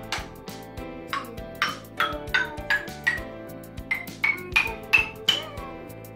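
A small wooden xylophone is struck one note at a time with a mallet, each strike ringing briefly. The notes climb up the scale, one bar after another.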